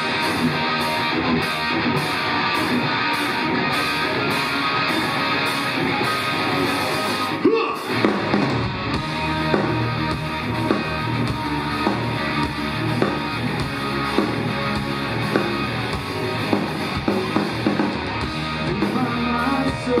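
Live rock band playing an instrumental intro on electric guitar, drums and keyboards, loud and steady. A brief break about seven and a half seconds in is followed by harder-hitting drums.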